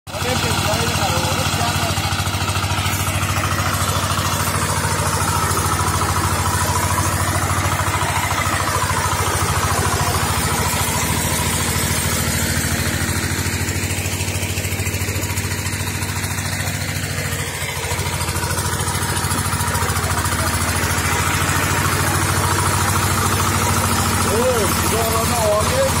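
Zubr walk-behind tractor engine running steadily under load, driving its rotary tiller through the soil.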